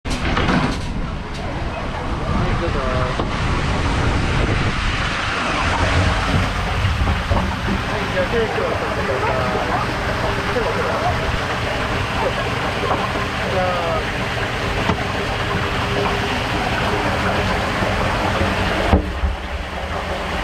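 Water-park ambience: a steady rushing noise with scattered distant voices and shouts. A voice says 'three' about eight seconds in.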